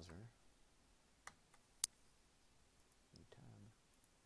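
Two computer mouse clicks a little over half a second apart, the second much louder and sharper.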